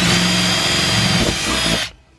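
Cordless drill boring a hole through a car's painted trunk lid. The motor runs at a steady high whine and then stops suddenly just before the end, as the hole is finished.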